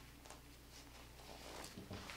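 Near silence: room tone, with faint rustling of rope cord and fabric being handled, a little louder near the end.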